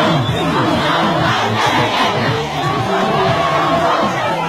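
A huge crowd of many voices shouting and cheering at once, the sound swelling through the middle.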